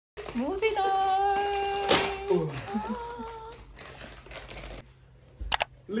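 A long drawn-out vocal sound that rises, holds one note for about a second and a half and slides down, followed by a few shorter calls, over a faint steady hum; a single sharp knock near the end.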